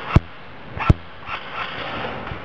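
Two sharp single shots from an airsoft gun, about three-quarters of a second apart, with a brief low ring after each in the vaulted chamber.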